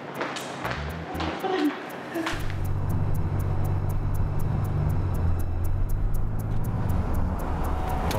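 Tense background music with a fast ticking beat. About two seconds in, the low, steady running of a Ford Expedition SUV's engine comes in beneath it as the vehicle pulls up.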